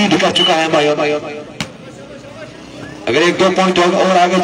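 A male commentator speaking in two stretches, one at the start and one from about three seconds in, with a single sharp knock in the quieter gap between them.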